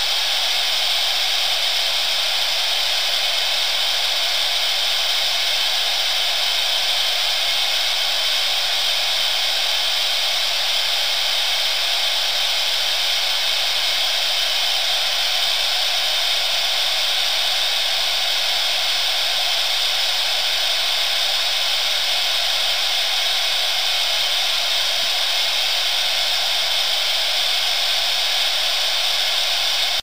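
Ham radio receiver hissing steadily with no signal on the channel: even static, with no voice after the contact has ended.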